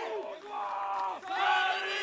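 Many voices shouting together in two long, held cries, with a brief dip about a second in.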